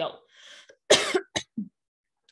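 A woman coughs about a second in: one sharp cough followed by two shorter, weaker ones, after a short breath in.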